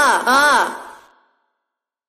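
A voice sample crying 'ah! ah!', two quick cries that each rise and fall in pitch, with a short echo tail and no beat under them.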